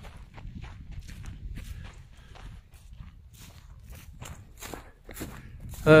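Footsteps walking through dry, dead grass and weeds at a steady pace.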